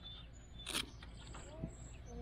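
Close handling noise at the pool wall: a brief crackling rustle about a third of the way in and a softer knock later, over a steady low rumble with faint voices.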